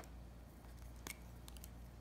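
A few faint clicks over quiet room tone, one about a second in and a couple more shortly after, as a plastic highlighter pen is picked up and handled over paper.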